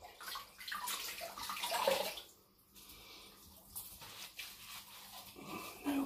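Water splashing at a bathroom sink as a face is rinsed with handfuls of water, loudest in the first two seconds and quieter after.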